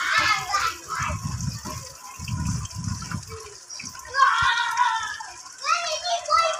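Water trickling from a tiered clay-pot fountain into a garden fish pond, with children's voices in the background near the start and again in the second half. Two low muffled rumbles come in the first half.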